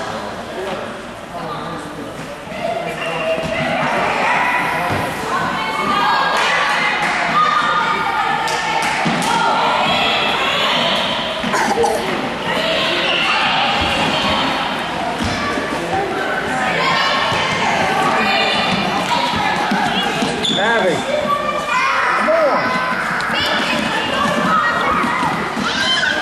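A soccer ball being kicked and bouncing on a gym's hardwood floor, with repeated thuds ringing in the large hall, over the steady chatter and calls of children and spectators.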